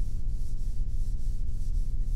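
Hand sanding a polyurethane-finished oak surface very lightly with 400-grit sandpaper between top coats: soft back-and-forth rubbing strokes, over a steady low hum.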